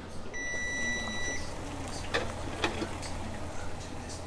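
A kitchen timer gives one steady electronic beep lasting about a second, followed about a second later by two short sharp clinks, over a low steady hum.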